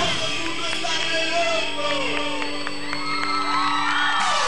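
Live tropical dance band in a break in the beat: the drums drop out and a held chord sustains while a young studio audience cheers and whoops over it.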